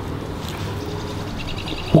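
Steady outdoor background noise with a faint bird chirping in quick repeats toward the end.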